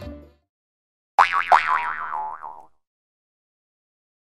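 Background music fades out. About a second later, a cartoon boing sound effect wobbles rapidly up and down in pitch for about a second and a half, then stops.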